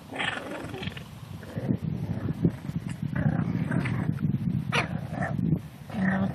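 Seven-week-old English bulldog puppies vocalising as they play, with a rough low rumble through most of the stretch and a few short higher-pitched sounds around three and five seconds in.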